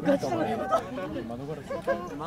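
Several people talking and chattering at once, with overlapping voices throughout.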